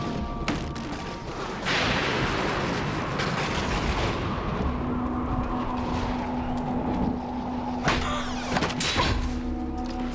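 Dramatic TV score with sound effects: a loud rush of noise about two seconds in that slowly fades, a low held note from about halfway, and a few sharp hits near the end.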